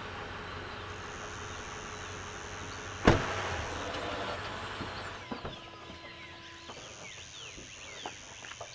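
Toyota Tundra pickup's engine idling steadily, with one loud sharp knock about three seconds in. The engine sound drops away a little after halfway, followed by a few light clicks and a click near the end as the driver's door opens.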